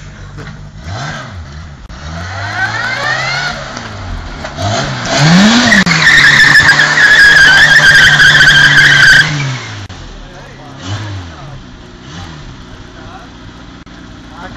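A car engine revving up and down as the car is driven hard, with the tyres squealing loudly for about four seconds in the middle.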